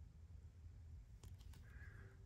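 Near silence, with a few faint clicks a little past halfway from metal costume-jewelry brooches being handled.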